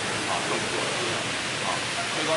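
Steady hiss of outdoor background noise, with faint voices from the crowd showing through it now and then.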